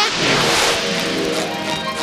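Background music: a sustained chord that comes in suddenly and holds steady.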